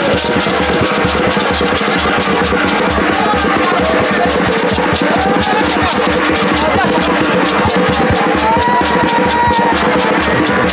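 Segbureh gourd shakers rattling fast over a steady drum beat, with voices singing, as live music for a Mende masquerade dance.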